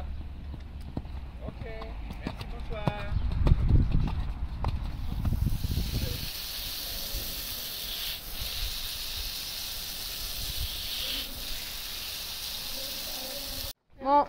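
Wind rumbling on the microphone with a few faint voices for the first few seconds, then a garden hose spray nozzle hissing steadily as water is sprayed onto a horse's legs, from about five seconds in until shortly before the end.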